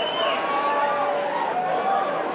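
Concert crowd cheering and whooping, many voices overlapping.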